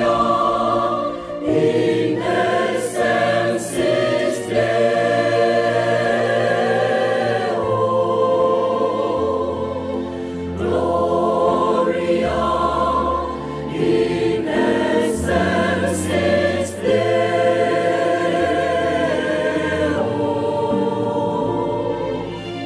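Mixed choir singing a Vietnamese Christmas carol in long, held chords, with low accompanying notes underneath that change every second or two.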